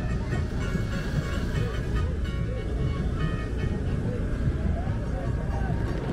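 Samba school parade music with singing voices over a dense band and percussion, steady and loud throughout.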